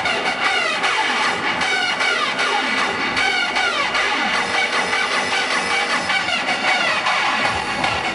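Electronic dance music from a hard dance DJ set, played loud over an open-air festival sound system, with a synth line of repeated downward-sliding notes.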